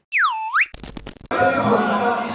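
An electronic sound-effect tone that swoops down in pitch and back up again within about half a second, followed by a brief burst of rapid clicks. Crowd chatter in a large hall comes in about 1.3 seconds in.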